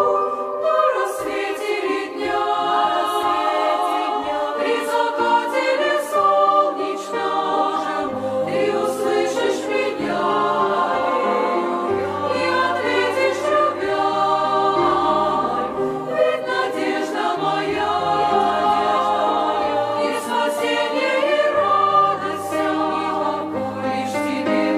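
A church choir singing a slow Russian hymn in harmony, with held chords over a moving bass line and piano accompaniment.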